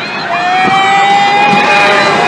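Riders screaming on a Kamikaze pendulum ride: one long, steady held scream begins just after the start, over the rush and rattle of the swinging gondola.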